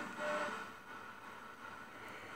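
Quiet room tone: a faint steady hiss with a thin, high, steady electronic whine, and a brief faint tone about a quarter-second in.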